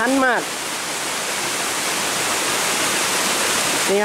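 A steady, even rushing noise with no distinct events, following a brief spoken word at the start.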